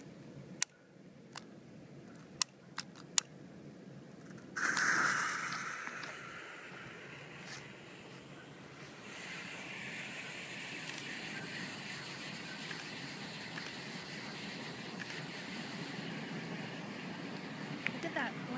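Five sharp clicks of a lighter in the first few seconds, then a homemade smoke bomb in a can catches with a sudden loud whoosh about four and a half seconds in. It then burns on with a steady hissing while it pours out smoke.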